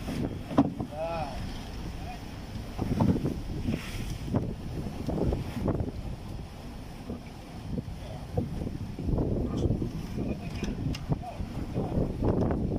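Wooden fishing boat under way at sea: water rushing and splashing against the hull, with wind buffeting the microphone in irregular gusts.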